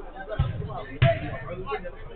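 Two dull thumps of a football being struck, about half a second apart, the second louder, with players' voices in the background.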